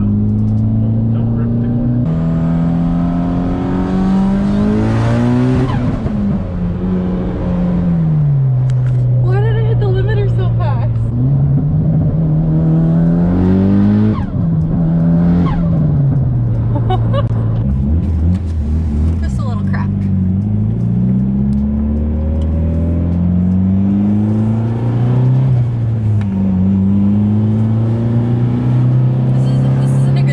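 Mitsubishi Lancer Evolution VIII's turbocharged 2.0-litre four-cylinder engine, heard from inside the cabin. It is pulling hard, its pitch climbing and then dropping back several times as it runs up and is shifted.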